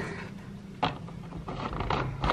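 Handling noise: a single sharp click a little under a second in and a few fainter ticks, over a low rumble that grows toward the end.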